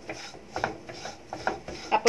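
Wooden spatula scraping and stirring dry-roasted grated coconut and spice powders around a nonstick pan: an irregular rasping with small clicks.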